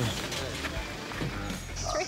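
Quiet, mumbled speech from a man answering questions, over a steady outdoor background.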